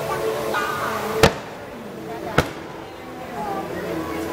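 Two sharp fireworks bangs about a second apart, the first a little over a second in and the louder, over crowd chatter.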